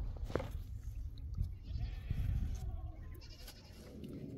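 Livestock bleating faintly in the background over a low rumble, with a sharp tap about a third of a second in, such as a mason's trowel working wet cement.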